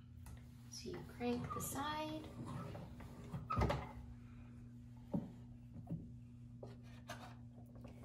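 Wooden phonograph cabinet and its tone arm being handled: a few light knocks and thumps, about three and a half, five and six seconds in, over a steady low hum. Faint talk is heard between one and two and a half seconds in.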